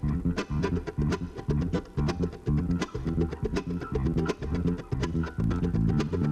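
Live band playing an instrumental passage, led by a busy electric bass line with quick notes, alongside mandolin.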